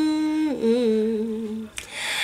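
A woman singing unaccompanied, holding one long note that then drops to a lower note with a slight waver, followed by a short breath-like hiss near the end.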